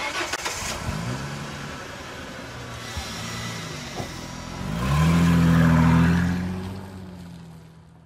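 Car engine starting and revving: it starts abruptly, rises in pitch about a second in and again about five seconds in, and is loudest just after that before fading out.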